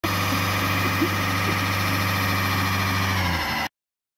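Diesel engine of a 2006 LTI TXII London taxi idling steadily while blowing thick white exhaust smoke, with a faint click about a second in. The pitch dips slightly near the end before the sound cuts off abruptly.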